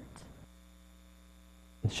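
Faint steady electrical mains hum, a low buzz with a row of overtones, in a gap between voices; a man starts speaking near the end.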